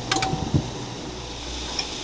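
A glass lid set down on a pan of simmering bean broth: two quick clinks just after the start with a brief ring, and a soft knock about half a second in, then a low steady background hum.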